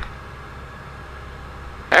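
Cessna 172 Skyhawk's engine and cabin noise, a low steady drone heard through the aircraft intercom, with a faint click near the start.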